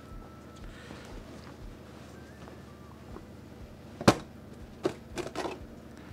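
A sharp knock about four seconds in, followed by a few lighter knocks: a freshly baked loaf being turned out of its metal loaf tin.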